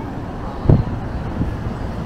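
Town-centre street ambience: a steady low rumble of road traffic, with a brief low thump just under a second in.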